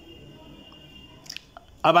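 Low room noise during a pause in a man's speech, with a faint steady high whine early on and a couple of soft clicks. Near the end, the man's voice starts again loudly.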